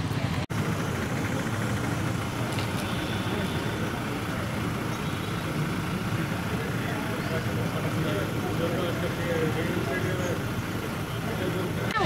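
Steady outdoor background noise with a low rumble like distant traffic, and faint far-off voices growing a little clearer in the second half. The sound cuts out briefly about half a second in.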